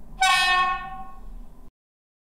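Low-tone horn of a PIKO H0 model of a PKP SU46 diesel locomotive, played by its sound decoder through the model's loudspeaker over a low steady rumble. One blast of about a second and a half, cutting off abruptly.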